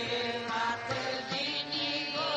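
Sikh Naam Simran: devotional chanting of 'Waheguru' with music, a wavering sung voice over steady held drone tones.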